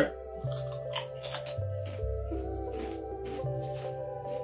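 Kettle-cooked potato chip (Takis Kettlez Fuego) crunching as it is bitten and chewed: a run of short, irregular crunches over background music with a slow, changing bass line.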